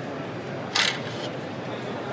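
A single short, sharp clack about a second in as the removable integrated scale is pulled out of a Bizerba GSP HD slicer, over the steady murmur of a busy exhibition hall.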